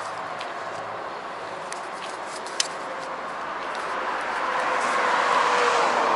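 Steady road noise while riding an electric bicycle beside a busy road: wind and tyre rumble mixed with passing traffic, swelling over the last couple of seconds. A light click sounds about two and a half seconds in.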